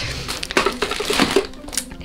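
Thin white plastic bag rustling and crinkling in irregular crackles as hands open it and rummage through the toys packed inside.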